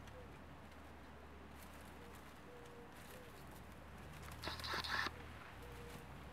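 A brief rustle of garden plants, under a second long, about four and a half seconds in, as a kitten scrambles through the foliage. Otherwise only a faint steady low hum.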